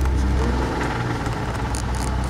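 2000 Ford Taurus 3.0-litre 24-valve DOHC V6 running, heard from inside the cabin, with the throttle opened to raise the revs. The engine is described as bad, with a rod rap.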